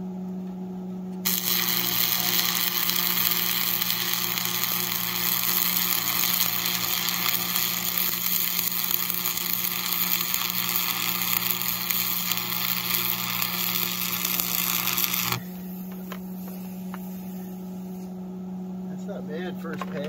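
Stick welding with a Lincoln AC-225 transformer arc welder: the electrode arc strikes about a second in and crackles steadily as a bead is run on the steel bracket, then breaks off after about fifteen seconds. The welder's transformer hums steadily throughout.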